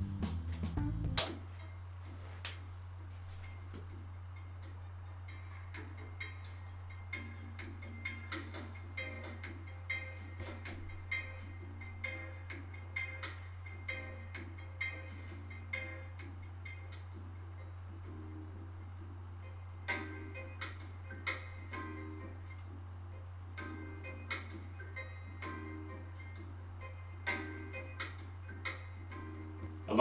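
Music playing quietly through a homemade synth amplifier module and its pair of small speakers, over a steady low hum. A louder passage cuts off about a second in.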